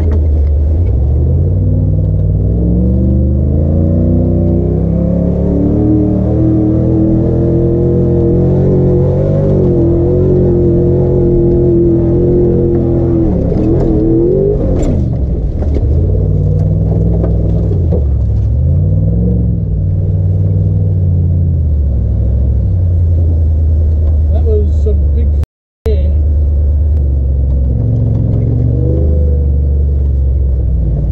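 Engine of a Nissan Patrol GQ with an LS1 V8 under load off-road, heard onboard: the revs climb over the first several seconds and are held high, fall away sharply a little under halfway through, then rise and fall several times as the truck works over the track. The sound cuts out for a split second near the end.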